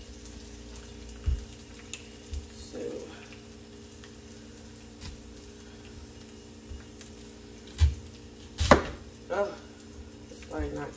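Chef's knife slicing through an onion onto a cutting board, with a few sharp knocks of the blade on the board, the loudest near the end, over the steady sizzle of burger patties and bacon frying on an electric griddle.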